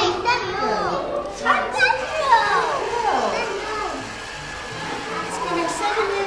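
Young children's voices chattering and exclaiming, with music underneath.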